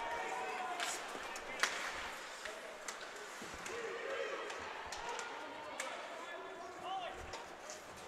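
Ice hockey rink sound of live play: a handful of sharp clacks and knocks from sticks, puck and boards over a steady rink hum, with faint voices of players and spectators.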